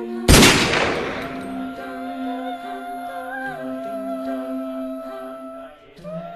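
A single gunshot, a sharp crack about a third of a second in that fades away over about a second, over hummed vocal music with long held notes.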